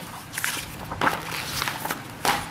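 Paper pages of a picture book being handled and turned, with a few short rustles.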